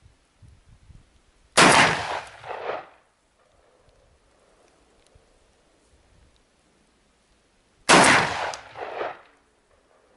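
Two shots from an MP-156 inertia-operated semi-automatic 12-gauge shotgun firing slugs, about six seconds apart. Each loud report is followed by a rolling echo lasting about a second.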